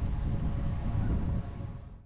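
Wind rumbling on the microphone across an open aircraft-carrier flight deck: a steady low rumble that fades out near the end.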